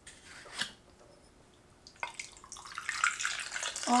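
A shaken cocktail being poured from a metal cocktail shaker into a glass of ice: a splashing liquid pour that starts about halfway through and grows louder. A light click or two comes before it.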